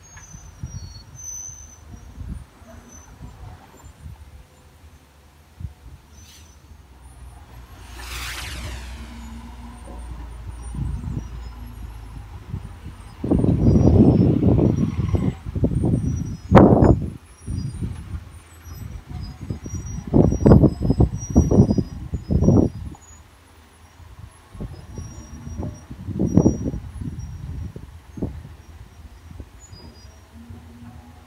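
Diesel dump truck engines working on a steep dirt haul road, a low rumble throughout, with a brief falling whistle about eight seconds in. Loud irregular gusts, most likely wind on the microphone, come and go through the middle.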